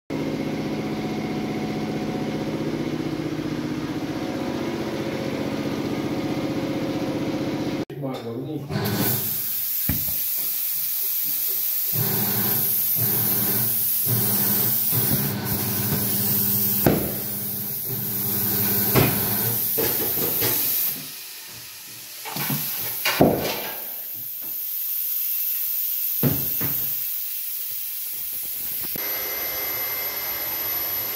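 Paint spraying onto the trailer's metal, heard as a loud high hiss that comes in about eight seconds in and runs in bursts, broken by short gaps and a few knocks, until it cuts off near the end. Before the spraying starts there is a steady hum with several tones.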